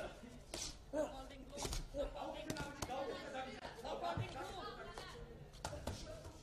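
Voices calling out in a large hall, over a series of sharp, irregular slaps of boxing gloves landing as two boxers trade punches at close range.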